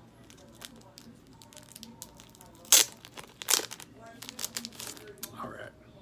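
Packaging around a mailed trading card being torn open: two loud sharp rips about a second apart, then lighter crinkling and rustling.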